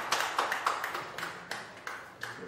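Scattered hand clapping from a small group of people, thinning out and fading away over the two seconds.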